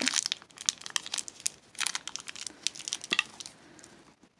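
Crinkly plastic toy blind-bag wrapper being crumpled and torn open by hand, an irregular run of crackles that thins out and fades near the end.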